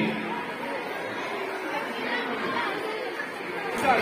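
Many young children chattering at once, a diffuse hubbub of overlapping voices with no music.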